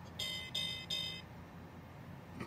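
Electronic sound effect from the Bucky pirate-ship toy's speaker: three short tones in quick succession, over within about the first second.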